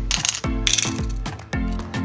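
Coins clinking as a hand scoops a handful from a bowl of coins and drops them into small bowls, over background music with a steady beat.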